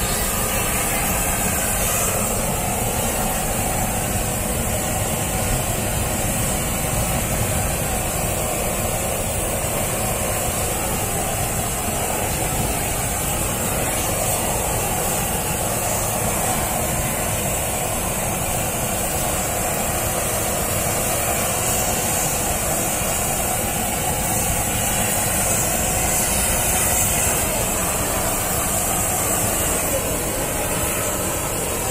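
Gas blowtorch burning steadily without a break while its flame singes a pig's head.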